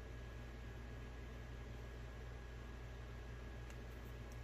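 Steady low electrical hum with a faint hiss, and a single faint click near the end.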